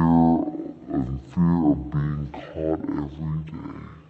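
A man's voice speaking in short phrases with brief pauses, fading out near the end.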